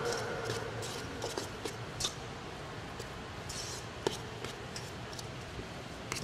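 A metal spoon scraping and clicking irregularly against a stainless steel mixing bowl as a thick ground-meat mixture is stirred, with a sharper click about four seconds in.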